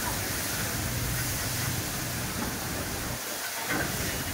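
Noodles frying in a large wok, a steady hiss, with a short knock near the end.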